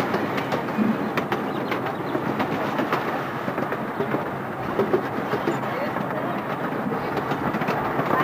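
Hermann Park's miniature train running, heard from on board: a steady rumble of the ride with scattered clicks from the wheels on the track.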